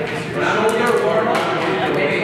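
Indistinct talking voices that no words can be picked out from.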